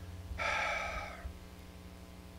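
A man drawing one audible breath, lasting about a second, during a pause in his talk.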